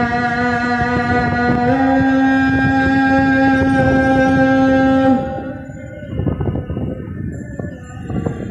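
Muezzin's call to prayer (adhan): a man's voice holds one long, drawn-out note that steps up slightly in pitch about two seconds in and breaks off about five seconds in. After that there is a quieter stretch of background noise between phrases.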